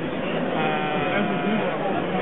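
A held, slightly wavering voice-like note lasting about a second, over a steady murmur of voices in the room.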